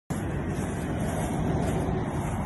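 Steady noise of highway traffic going by, picked up by a phone's microphone.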